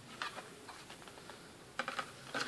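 Light clicks and taps from a laptop motherboard being handled and shifted on the workbench, a few about a quarter second in and a quick cluster near the end.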